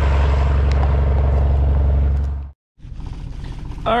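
Engine running steadily with a loud, deep hum; about two and a half seconds in it cuts off abruptly, and after a brief gap a quieter vehicle engine runs on.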